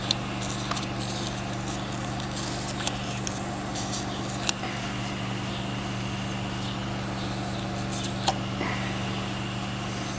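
A steady low machine hum with a few faint clicks and light handling noises.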